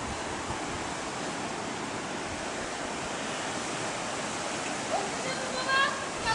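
Steady rush of sea surf washing in on the beach, with a person's voice briefly near the end.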